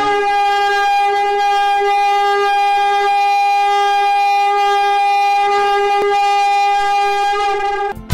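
A horn blast in the manner of a shofar: one long, steady note, held until it cuts off near the end, sounded as the trumpet call of a channel's intro.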